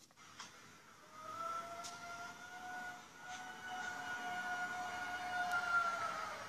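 A long, distant wailing tone starts about a second in, rises slightly, holds a steady pitch for about five seconds and drops away at the end. A few faint clicks come just before it.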